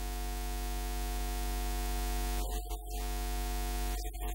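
Steady electrical mains hum with many overtones over a hiss, from the sound system, while no one speaks.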